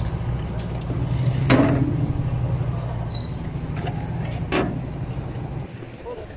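Boat engine droning steadily, with two short hissing rushes about a second and a half in and again three seconds later.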